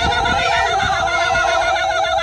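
Dancers' voices chanting a long held note in a fast, quavering 'oh-oh-oh' pulse, about eight pulses a second, with other voices sliding in pitch beneath it.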